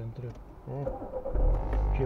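A car engine starting a little over a second in and settling into a steady idle with a low rumble.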